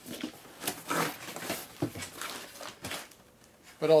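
Cardboard shipping boxes and paper packing being handled by hand: irregular rustling and scraping, with a few sharper taps.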